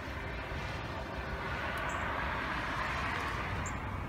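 A vehicle passing on a wet, snowy street: a rushing hiss that swells for a couple of seconds and eases off, over a low steady rumble.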